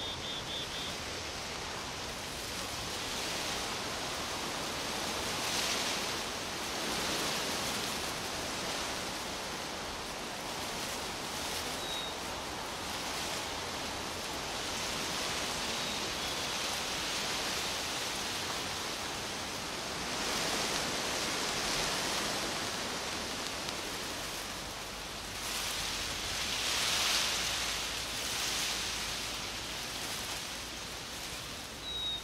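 Wind rustling through the leaves of the trees, swelling and fading in several gusts, with a few faint high chirps.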